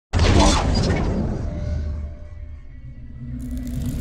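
Cinematic logo-intro sound effect: a sudden loud crashing hit just after the start, fading into a low rumble, then a swelling noise near the end that leads into the next hit.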